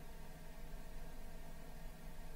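Quiet room tone: a steady low hum and hiss with no distinct sound.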